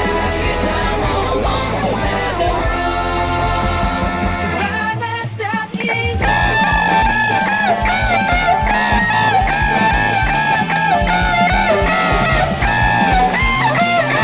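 Rock song with a singing voice and a full band, with an electric guitar played along through an amp. About five seconds in the music briefly drops away, then comes back with a high melody wavering in pitch over a steady beat.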